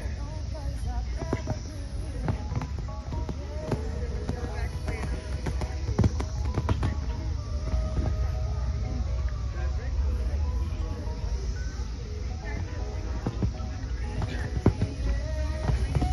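Music and people talking in the background, over a steady low rumble of wind on the microphone, with scattered sharp knocks, the loudest about six seconds in and again near the end.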